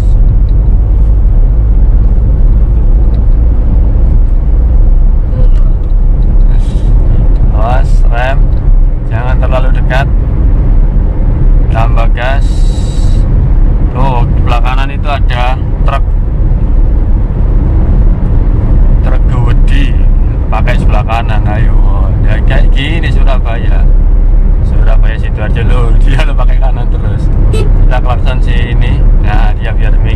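In-cabin sound of a 2014 Suzuki Karimun Wagon R with its small three-cylinder engine cruising at about 100 km/h in fifth gear: a steady low drone of engine, tyres and wind. Talking comes over it at intervals.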